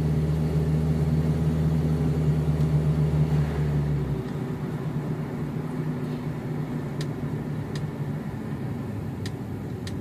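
Car engine and road noise heard from inside the cabin while driving slowly. A steady low engine hum drops away about four seconds in, leaving a quieter rumble, and a few light clicks come near the end.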